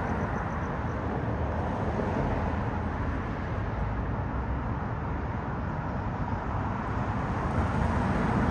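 Steady outdoor background noise: a low, even rushing haze with no distinct events.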